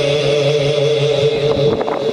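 A steady held vocal drone, the hummed background chorus under a naat, with no lead voice moving over it. It breaks up into a few short chanted strokes near the end.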